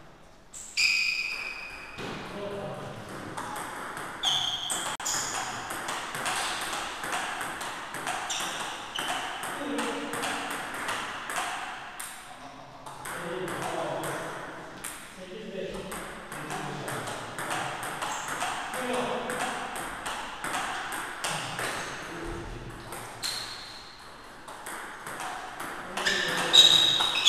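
Table tennis practice rally: a steady run of quick clicks as the ball is struck back and forth off bats and table.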